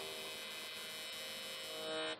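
AC TIG welding arc from an HTP Invertig 221 buzzing steadily at its 80 Hz AC frequency.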